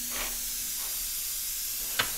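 A steady, even hiss with no speech, the workshop's background noise. A faint low hum fades out within the first second, and one light click comes near the end.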